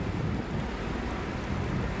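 Steady low noise of wind buffeting the microphone over open water, with no distinct engine note or other events.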